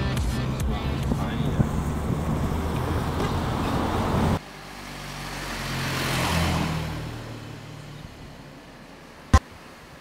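Steady noisy ambience with a low hum that cuts off abruptly about four seconds in. Then quieter street ambience, in which a passing road vehicle swells and fades away, and a single sharp click comes near the end.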